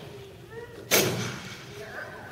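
A single sharp, loud bang about a second in that rings out in a large echoing hall, just after a short spoken word.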